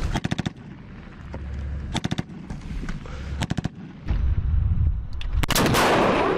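Three short bursts of automatic rifle fire, each a quick run of shots, a second or two apart. A much louder single blast follows near the end: the launch of a shoulder-fired anti-tank weapon.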